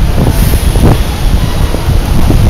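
Loud, steady low rumble of wind buffeting the microphone, mixed with passing street traffic, with a brief high hiss about half a second in.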